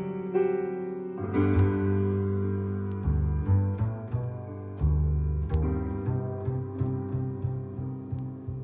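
Upright double bass played pizzicato, its low plucked notes moving under a piano accompaniment playing sustained chords and melody.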